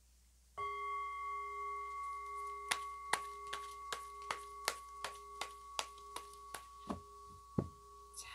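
A bell-like ringing tone starts about half a second in and rings on steadily, a low note with two higher overtones, slowly fading. From about a third of the way in, an even ticking of two to three sharp clicks a second runs over it, stopping shortly before the end.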